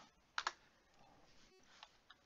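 A computer keyboard keystroke, a single sharp click about half a second in, then a faint tap near the end, over quiet room tone.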